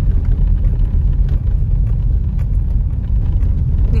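Steady low rumble of a car driving along a city street, heard from inside its cabin.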